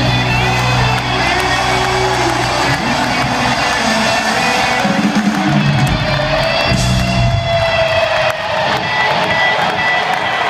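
A rock band playing the closing bars of a song live in an arena, electric guitar over sustained bass notes, with the guitar holding a long note near the end. Crowd cheering and whooping can be heard under the music.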